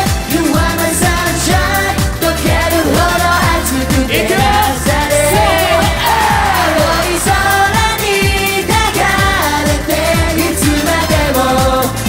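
A J-pop song performed live, with a steady driving beat under a lead male voice singing into a microphone.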